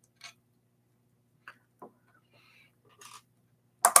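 A few faint, scattered metal clicks and scrapes of small pliers working loose the retaining nut of an electric guitar's volume pot, over a low steady hum.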